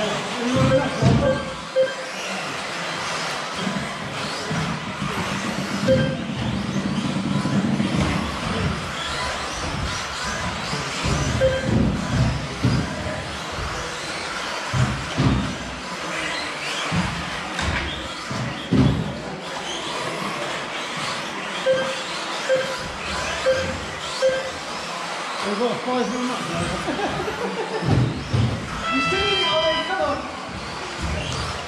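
1/10 scale electric 2WD off-road RC buggies racing on an indoor astroturf track: a steady mix of motor whine and tyre noise, broken by many short sharp knocks.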